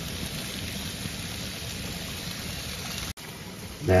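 Sliced potatoes and onions sizzling steadily in a perforated pan on a grill. The sound cuts out for an instant about three seconds in.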